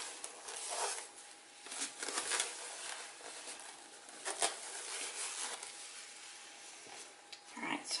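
Scattered rustling and handling noises with a few sharp clicks, over a faint steady hum; a spoken word comes in at the very end.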